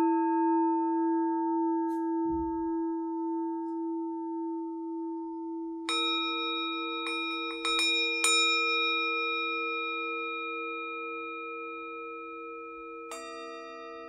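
Tibetan singing bowls struck and left to ring, each tone fading slowly with a wavering beat. A strike comes about six seconds in, a few light taps around seven seconds, another strike just after eight seconds, and a lower-pitched bowl is struck near the end.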